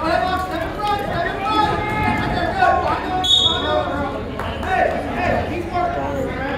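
Spectators' voices calling out and talking over one another, with crowd chatter in a gymnasium.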